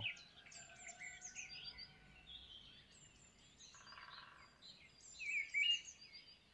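Several birds chirping and calling: high, thin, short chirps overlapping with warbling calls, with a louder run of calls near the end.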